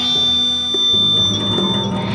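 Free-jazz improvisation by a quartet of keyboard, balalaika, accordion and electric guitar. A high steady tone is held for nearly two seconds over a low held note that stops about a second in.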